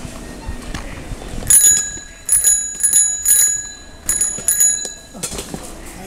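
A small metal bell rung about six times in quick groups, each ring bright and high with a short decay.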